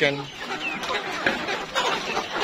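A flock of Rainbow Rooster hens crowded at a feed trough, clucking and squawking together, with a short high squawk near the middle. The birds are hungry and waiting to be fed.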